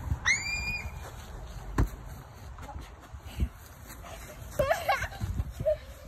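A young child's short, high-pitched squeal, a single sharp thump about two seconds later, and another brief child's vocal call near the end, over faint outdoor background.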